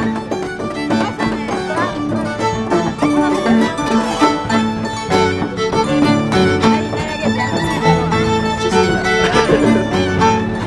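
Andean harp and violin playing a toril, the harp plucking notes in a steady rhythm under the violin's melody.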